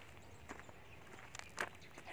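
A few footsteps on a paved path, soft and irregular, the clearest about one and a half seconds in.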